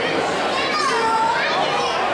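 Chatter of a crowd with children's voices, a high child's voice rising and falling a little under a second in.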